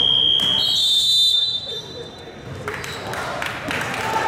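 Referees' whistles: two steady, shrill blasts that overlap, the second slightly higher in pitch, stopping play in an indoor basketball game. Together they last about a second and a half from the start, followed by court noise of shoes and players.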